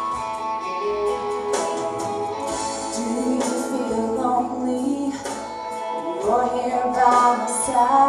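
Guitar-led musical accompaniment of a ballad, with a woman singing into a handheld microphone, her voice coming in about two and a half seconds in.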